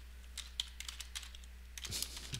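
Typing on a computer keyboard: irregular key clicks, over a steady low electrical hum.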